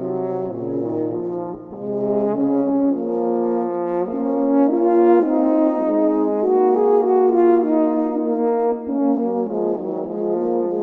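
Two French horns playing a slow, lyrical vocalise in two parts: held, smoothly joined notes that move together, with a brief breath break about two seconds in and the sound swelling louder in the middle.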